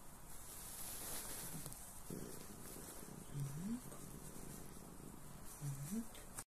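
Domestic cat purring softly in low, fast pulses while its bandaged paw is handled. A brief low hum rising in pitch comes about three and a half seconds in.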